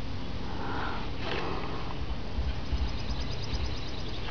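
A person's breaths or sniffs close to the microphone, twice in the first half, over a steady low background; faint rapid fine ticking shows up later on.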